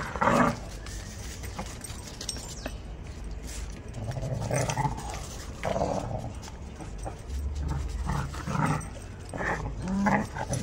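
Dogs growling in play while tugging on a tug toy, in short repeated bouts, several coming close together near the end.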